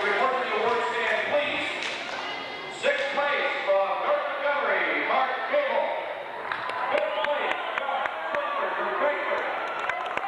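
Many people talking at once in an indoor pool hall, a crowd babble with no single clear voice, with scattered sharp clicks and knocks in the second half.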